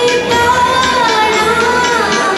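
A young woman singing a melody into a microphone, over accompanying music with a steady beat.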